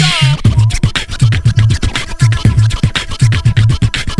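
Hip-hop beat with a repeating bassline and drums, with a turntable scratch at the very start.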